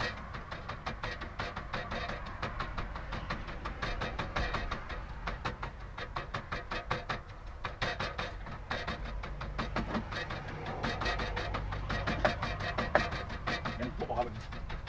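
Wooden pestle pounding in a mortar, rapid, steady strokes several times a second, crushing chilies for a spicy stir-fry paste.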